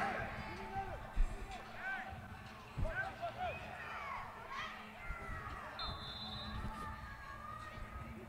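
Faint, distant voices of players and onlookers calling out across a large indoor hall, with a short whistle about six seconds in.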